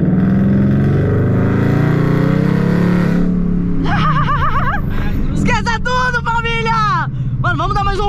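Ford Mustang's V8 engine heard from inside the cabin, accelerating hard for about three seconds and then dropping off. After that come high-pitched whoops that rise and fall, from about four seconds in.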